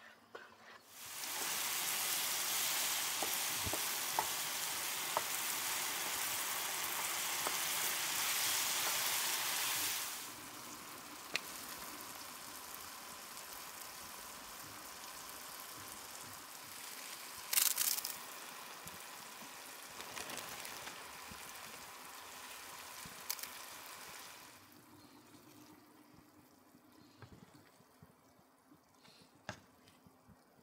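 Ground meat sizzling in a skillet on a portable camp stove. The sizzle starts about a second in, turns quieter about ten seconds in, and dies away near twenty-five seconds. A brief louder rustle comes near eighteen seconds, and a few light clicks follow the sizzle.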